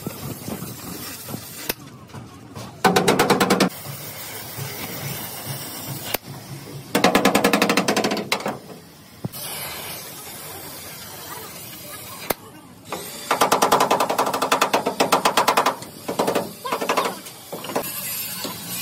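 A power tool striking rapidly in four bursts, each one to two and a half seconds long, over the steady hiss of a lit gas torch heating sheet steel.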